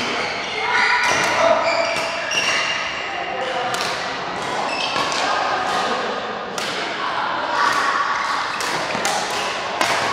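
Badminton doubles rally: rackets strike the shuttlecock with sharp cracks at irregular intervals, quickening into a run of hits near the end, echoing in a large hall.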